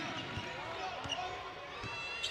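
A basketball bouncing on a hardwood court, a few separate bounces over a low arena background.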